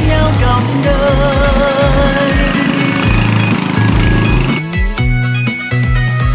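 Background music: the instrumental tail of a Vietnamese pop love song, with a wavering held melody line over a bass line. About four and a half seconds in it gives way to a different track with a plucked, beat-driven accompaniment.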